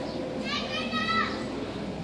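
A young child's high-pitched voice calling out for about a second, over background chatter of people around it.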